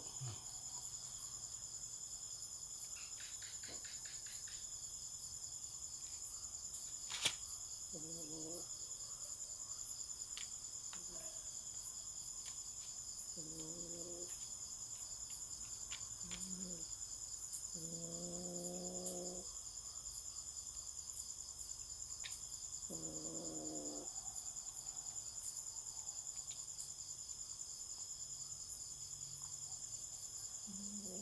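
Crickets chirping steadily in a high, fast pulsing trill, with one sharp click about seven seconds in and a few short, low vocal hums from a person.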